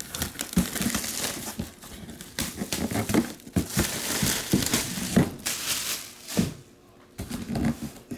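Plastic shrink-wrap being torn and pulled off a cardboard box, crinkling and crackling loudly in fits and starts, with a brief pause near the end.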